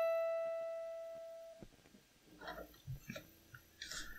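A single high E note on an acoustic guitar, the top note of an E minor chord picked string by string, rings and fades for about a second and a half before being cut off by a damping hand. A few faint rustles and knocks follow near the end as the guitar is moved.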